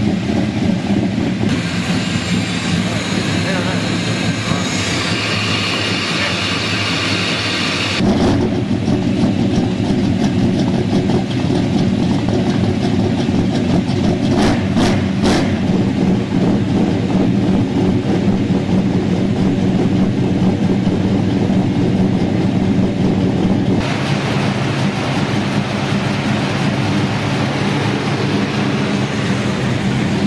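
A 1968 Dodge Charger's 440 big-block V8, on a newly fitted Edelbrock fuel injection, idling steadily. It is running rich, at about 11.5:1 air-fuel, with a smoky exhaust. A few brief high-pitched chirps come near the middle.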